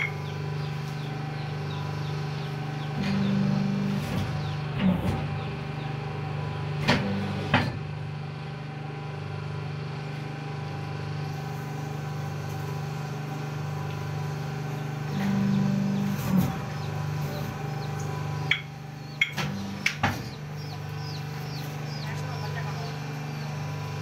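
Paper plate making machine humming steadily. A louder motor tone swells for about a second twice, around three and fifteen seconds in. Sharp clicks and knocks come from the dies and from the paper sheets being fed in and pulled out.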